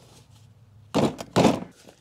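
Two short knocks about half a second apart, about a second in: a ratchet socket wrench being fitted onto the extension on the lawn mower's stuck centre blade nut.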